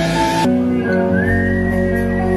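Live rock band led by a distorted electric guitar, a Les Paul through a Marshall amp, playing a sustained lead line; about a second in, a high note slides up and is held over a steady bass and keyboard backing.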